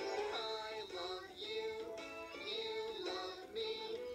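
A children's TV song: voices singing together over backing music, heard through a television's speaker.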